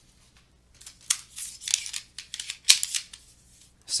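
A run of short, scratchy rustles and taps close to the microphone, with one sharp click in the middle: desk handling noise while no writing is being done.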